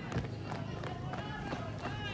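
Footsteps of a drill troop marching in formation, boots striking the court in faint, repeated knocks, with crowd voices in the background.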